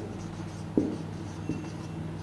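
Marker writing on a whiteboard: faint scratchy strokes, with two light taps of the tip about a second and a second and a half in.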